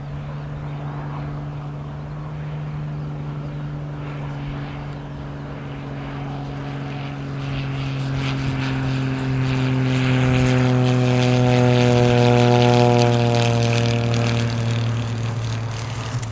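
Extra 300 aerobatic plane's piston engine and propeller droning as it flies low past, growing steadily louder to a peak about three-quarters of the way through. As it passes, the engine note slides down in pitch.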